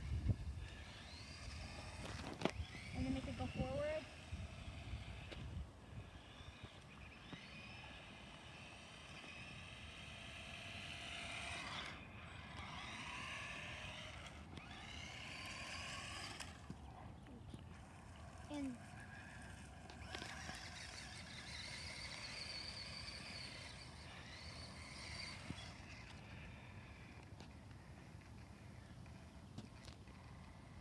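Small electric motor of a toy RC car whining faintly, rising and falling in pitch as it is driven. A short bit of a child's voice comes in the first few seconds.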